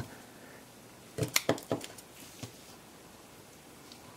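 A quick run of light, sharp metallic clicks and taps about a second in, with one more small tap a little later: a tiny coil spring and the repair tool being set down on the work bench.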